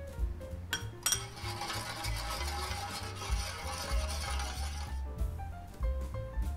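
A metal spoon clinks against a stainless steel tray about a second in, then about four seconds of steady water noise in the tray as light salt water is made for thawing tuna. Background music plays throughout.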